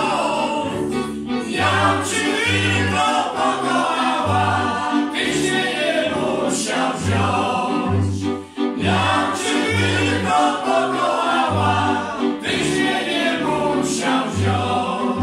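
Górale highland string band from Podhale playing: three fiddles over a bowed basy (folk bass) sounding regular low bass notes, with men singing a folk tune over the strings. The music breaks briefly a little past the middle, then carries on.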